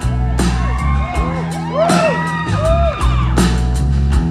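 Live band of grand piano and electric guitar over deep sustained bass notes, playing without vocals, while audience members whoop several times; the rising-and-falling calls cut over the music.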